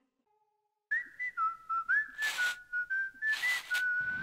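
A whistled tune: a single clear note line that steps up and down between pitches with short slides. It starts about a second in, after a moment of silence, and is crossed by two brief hissy swishes.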